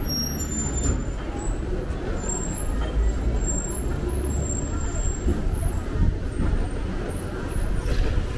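City street traffic: motor vehicle engines running and passing in a continuous low rumble, with faint thin high tones above.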